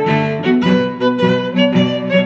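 Background music on bowed string instruments, several parts sounding together, the notes changing a few times a second.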